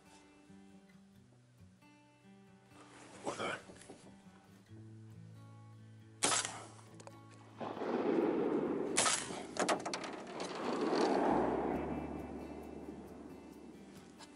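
Shotgun shots over open water, under background music: one sharp shot about six seconds in that echoes away, then more shots about three seconds later.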